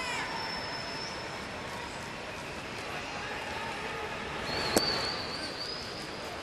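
Ballpark crowd murmuring steadily, with a thin high whistle-like tone near the start and again late on. Close to five seconds in, a single sharp pop as the pitch hits the catcher's mitt for a called ball.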